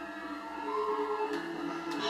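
Balinese gamelan music: ringing metal tones held at steady pitches, several sounding together and changing note by note.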